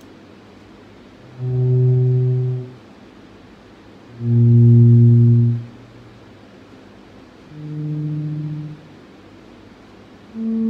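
Electric bass guitar playing three long, low notes, each fading in and out over about a second and a half, with quiet gaps between them; the last note is a little higher than the first two.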